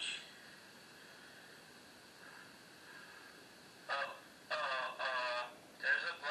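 Handheld digital voice recorder playing back an EVP recording through its small speaker: a steady hiss, then a thin, tinny voice from about four seconds in.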